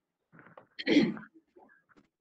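A short, loud, noisy burst of a person's breath about a second in, lasting roughly half a second, with faint murmurs before it.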